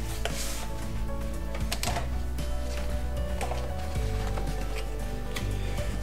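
Background music, with a few light scrapes and taps from a cardboard keyboard box being opened by hand.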